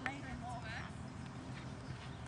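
A horse's hoofbeats on a sand arena, with faint wavy calls over them.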